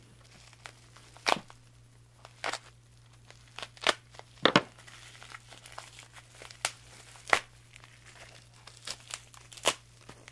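Packaging around a mailed fingerboard deck being unwrapped by hand: irregular crinkling and tearing with sharp crackles scattered through, loudest about halfway.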